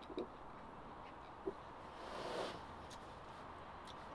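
Quiet background with a man's soft exhale a little past halfway through, just after a sip of beer, and a faint click about a second and a half in.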